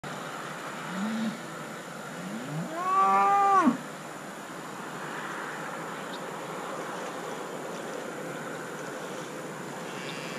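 Mother cow mooing: a short low moo about a second in, then a longer, louder moo that rises in pitch, holds, and breaks off at about 3.7 s. It is the call of a cow whose newborn calf is stranded on the other side of the fence from her.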